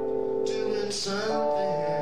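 Live music: guitar with sustained chords that change about a second in, and a woman singing at the microphone.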